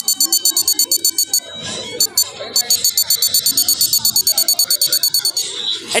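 The buzzer of an ultrasonic-sensor obstacle detector (smart glasses for the blind) beeping rapidly at a high pitch, about ten beeps a second. This signals that the sensor's reflected ultrasonic waves have picked up an object within range. The beeping thins out for about a second near the middle, then resumes and stops shortly before the end.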